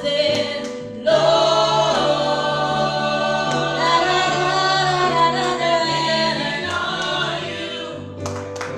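A small group of church singers singing a gospel song together in harmony, the voices swelling louder about a second in.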